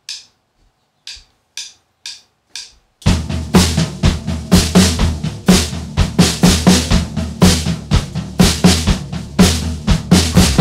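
Drummer counting in with sharp stick clicks, about two a second, then the full drum kit coming in about three seconds in. The kit plays a steady, driving beat with bass drum, snare and cymbals as the song's drum intro.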